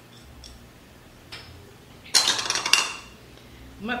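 A burst of rattling and scraping, about a second long, from kitchen utensils and containers being handled, about two seconds in. It is the loudest thing here. A faint click comes a little before it.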